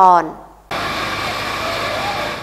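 A woman's voice finishes a word. About two-thirds of a second in, the sound cuts abruptly to a steady rushing noise with a faint whine, the field sound of a building fire with a fire engine running at the scene.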